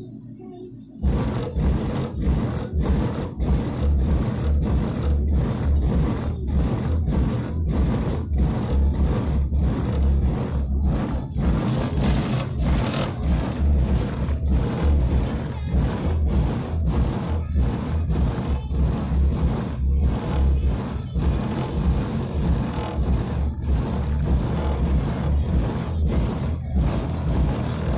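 Bass-heavy music with a steady, pounding beat, played through the car's Rockford Fosgate subwoofers in their new box. It starts abruptly about a second in, with the deep bass far louder than the rest.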